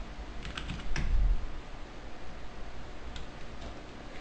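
A few computer keyboard keystrokes in quick succession about half a second to a second in, typing a number into a settings field, then one more faint click a little after three seconds.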